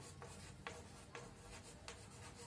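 Faint chalk scratching on a blackboard as a word is written, with about four short, sharp strokes.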